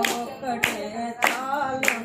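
Unaccompanied singing of a Telugu Christian worship song, with hand claps keeping time at a steady beat of a little under two claps a second.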